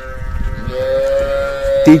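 A long, steady bovine moo, held for about two seconds with a slight rise in pitch about halfway through, ending near the close.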